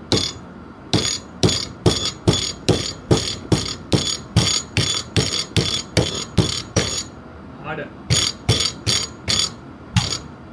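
A hammer strikes a 3D-printed Tullomer polymer part clamped in a steel bench vise in quick repeated blows, about two and a half a second, each with a short metallic ring. The blows pause briefly about seven seconds in, then three more follow. The part holds out through many blows before failing.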